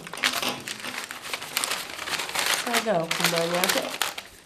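Paper being crumpled and rustled in the hands, a dense run of crackles, with a brief voice sound about three seconds in.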